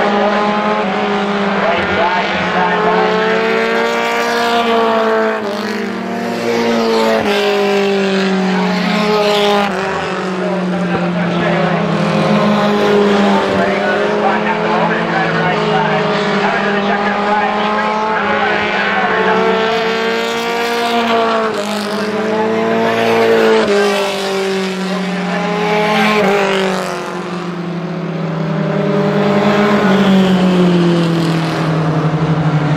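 Roadrunner-class stock cars racing on a short oval, several engines running hard. Their pitch rises and falls every few seconds as the cars accelerate off the turns and pass by.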